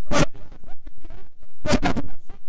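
Short rasping noise bursts close to a handheld microphone, one just after the start and a couple more near the end, with only faint sound between.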